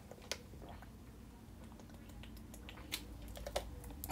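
A person taking a drink: a few faint swallowing clicks and gulps, spread over several seconds.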